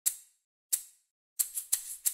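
Sparse crisp percussion clicks opening a bossa nova track: two single clicks about two-thirds of a second apart, then a quicker run of clicks leading in toward the band.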